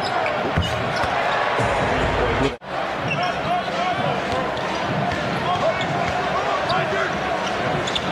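Arena game sound from a basketball broadcast: crowd murmur with a basketball bouncing on the hardwood and short squeaks from the court. The sound drops out for a moment about two and a half seconds in, at an edit cut.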